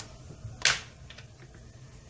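A short, sharp tap about two-thirds of a second in, with a couple of fainter ticks, as an orange silicone mat is laid on a marble counter and a small aluminium mold is set down on it.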